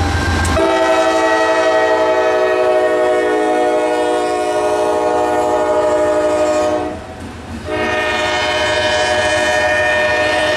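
Multi-chime air horn of a Norfolk Southern AC44 freight locomotive blowing a long, steady chord of several tones. A short break about seven seconds in, then a second long blast.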